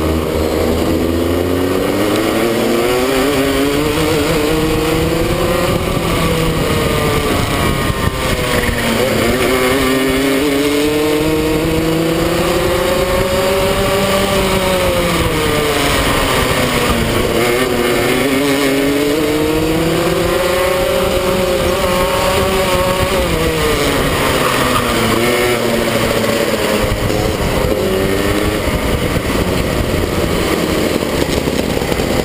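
Rotax Junior Max 125cc two-stroke kart engine heard onboard under racing load. Its pitch climbs for several seconds as the kart accelerates down each straight, then drops sharply as the driver lifts and brakes for a corner, about 8, 17 and 23 seconds in. Shorter rises and falls follow near the end.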